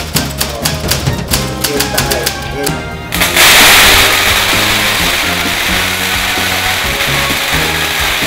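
A string of firecrackers going off about three seconds in: a sudden, loud, dense crackle of rapid bangs that keeps going, over background music.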